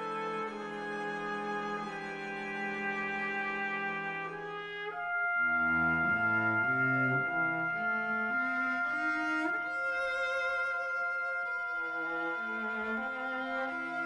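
Symphony orchestra playing: held chords, then about five seconds in it grows louder, with a high note held steady over moving lower lines.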